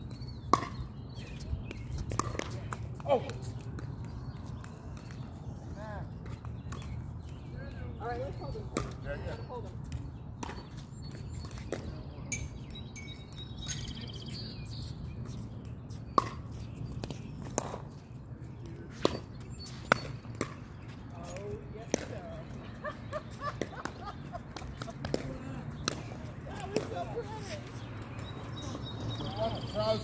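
Pickleball rally: sharp, irregular pocks of paddles striking the hollow plastic ball and the ball bouncing on the hard court, over a steady low hum.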